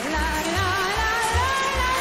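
A woman singing a Russian-style song with strong vibrato over band accompaniment, its bass notes pulsing two to three times a second.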